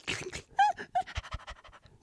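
A man's mouth close to a handheld microphone making a rapid string of breathy kissing and smacking noises, imitating someone smooching a pet, with a short squeaky whine about half a second in.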